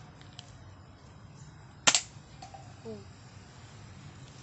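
A toy Glock 18 pellet gun fires a single shot about two seconds in: one sharp, short crack.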